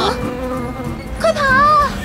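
Cartoon sound effect of buzzing bees, a steady drone as the swarm approaches, with a short vocal exclamation about one and a half seconds in.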